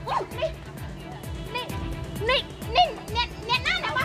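Voices talking over background music.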